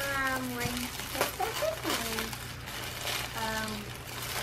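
A young child's voice in short, soft vocal sounds, three times, with faint rustling of tissue paper between them.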